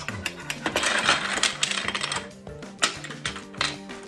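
Small plastic ice blocks and the plastic frame of a Don't Break the Ice game clattering against each other and the tabletop as they are gathered up to reset the game, in dense runs of clicks. Background music plays underneath.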